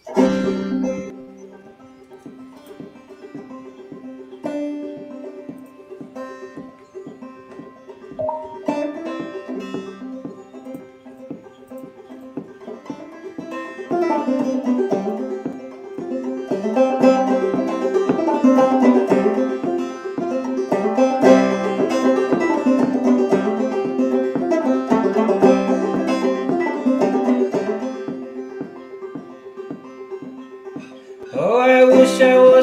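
Solo Vega banjo being picked as an instrumental song intro: sparse, quieter notes at first, then fuller and louder playing from about halfway through, easing off near the end.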